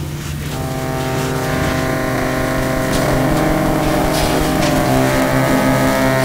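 Layered electronic sound-design drone: many held tones sounding together, thickening as new layers come in about half a second in and growing gradually louder.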